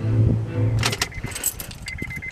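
Music from a car CD player fades out at the start, then a run of sharp plastic clicks and rattles with short repeated high beeps as the newly installed head unit in the dash is worked by hand.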